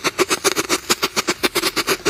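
A photo flash (strobe) firecracker burning, giving a rapid, even train of sharp pops at about seven a second.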